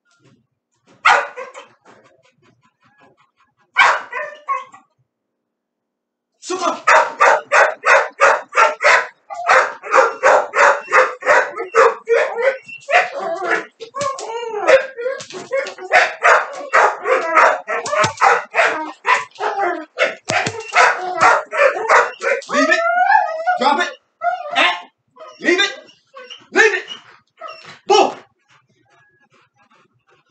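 Pit bull barking fast and repeatedly, about four barks a second, during bite-sleeve work. There are a few single barks in the first seconds, then an unbroken run of barking from about six seconds in until near the end, with a few drawn-out whining calls mixed in.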